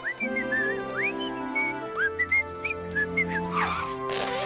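A cartoon character whistles a jaunty tune of short swooping notes over light background music, with a short falling sweep near the end.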